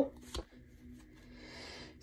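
A tarot card drawn from the deck: a light tap about half a second in, then a soft rustle of card sliding out near the end.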